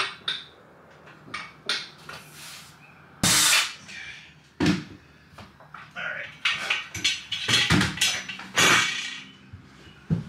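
An 8020 aluminum extrusion rail being handled against a plywood wall: a run of knocks and short scrapes. The loudest is about three seconds in, and several more come close together in the last few seconds.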